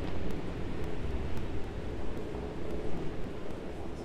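Falcon 9 rocket's nine first-stage engines heard from the ground during ascent: a steady low rumble with faint crackling.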